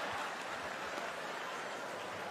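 Theatre audience applauding and laughing after a punchline, a steady wash of clapping that slowly fades.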